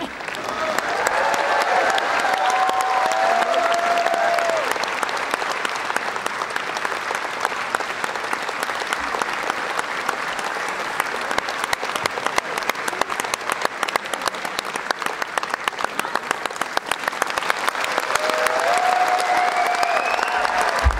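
A concert hall audience applauding steadily with dense clapping, and a few voices calling out near the start and again near the end.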